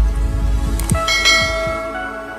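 Logo-intro sound effect: a deep bass rumble with quick falling swooshes, then about a second in a bell-like chime rings out and slowly fades.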